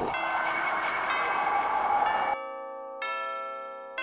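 A sparkling, hissy chime sound effect with bell tones for a little over two seconds. It cuts off sharply into clean, ringing bell chords of festive music, and new bell notes are struck near the end.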